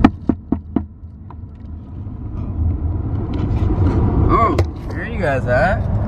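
A few sharp knocks of the camera being handled in the first second, then the steady low rumble of a truck cabin on the move, with voices near the end.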